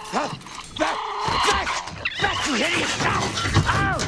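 Commotion of things crashing and breaking, mixed with short rising-and-falling cries, as a man struggles with raccoons inside an RV.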